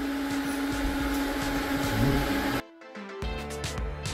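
Eureka J12 Ultra robot vacuum running with a steady motor hum, which cuts off suddenly about two and a half seconds in. Background music starts about half a second later.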